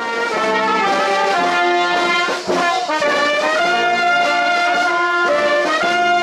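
Brass music: trumpets and trombones playing held chords that shift every second or so, starting abruptly.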